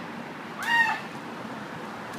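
A woman's brief high-pitched squeal that rises and falls in pitch, once, about half a second in.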